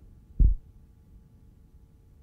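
A single dull, low thump about half a second in, then a faint steady hum.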